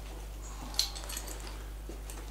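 Quiet room tone with a steady low hum, and a brief rustle of the camera bag's fabric being handled a little under a second in.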